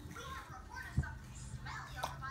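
A baby's faint, high-pitched babbling, with a single knock about halfway through.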